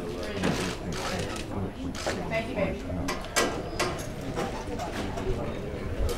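Indistinct chatter of several voices in a room, with a few sharp clicks near the middle.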